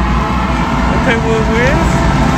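Loud arena crowd: a mass of voices over a steady low rumble, with one voice shouting out a little past the middle.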